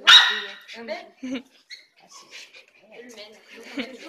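A small dog barks once, loud and sharp, right at the start.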